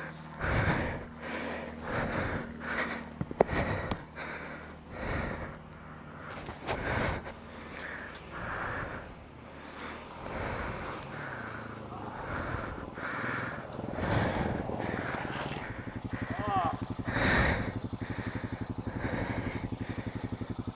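Hard breathing close to the microphone, roughly one breath a second, over the steady low idle of an ATV engine; the engine's idle pulses come through more plainly near the end.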